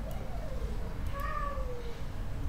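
Two drawn-out, high-pitched vocal cries, each falling in pitch: the first in the first second, the second starting a little past one second and fading near the end. A low steady hum runs underneath.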